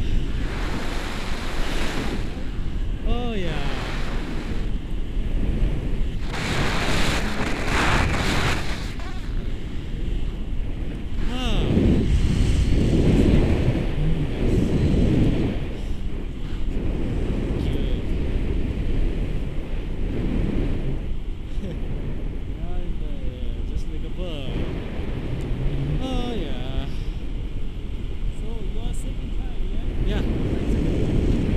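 Wind rushing over the camera microphone of a tandem paraglider in flight: a steady roar with gusty low buffeting, heaviest about twelve to fifteen seconds in.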